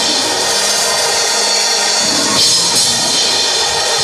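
Live church band music during a time of congregational praise: a drum kit with cymbals played over keyboard, loud and without a break.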